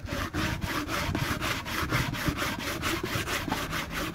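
Body file rasping back and forth across the cast iron flange of a Jaguar XJ6 exhaust manifold in quick, even strokes, about six a second. It is filing the pitted, rusty mating face flat and clean so the manifold will seal without leaking.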